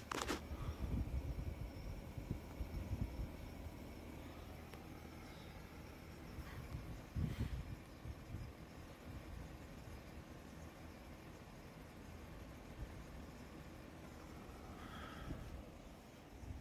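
EG4 solar mini-split heat pump's outdoor unit running faintly just after its inverter compressor has started, a low hum with a few steady tones, its fan turning.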